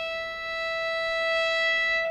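A violin holding one long bowed note, steady in pitch.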